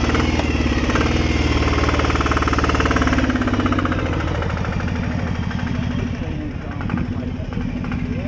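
Hayes M1030M1 diesel military motorcycle idling with a rapid, even clatter. It drops in level about three and a half seconds in and keeps running.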